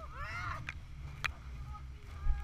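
Riders whooping and shrieking in rising-and-falling calls over a steady low wind rumble on the microphone, with a sharp click about a second in.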